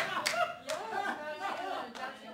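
Small audience in a room laughing and talking among themselves, with a few scattered hand claps.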